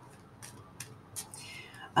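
A few faint, sharp clicks from a deck of tarot cards being handled in the hand, then a breath drawn in near the end, just before speaking.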